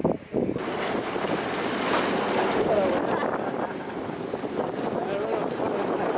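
Wind buffeting the microphone over water rushing along the hull of a moving boat, a steady, dense noise from about half a second in.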